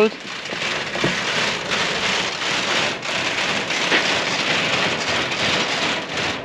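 An aluminium boat rolling down its roller trailer into the water, heard as a steady hiss of rushing water.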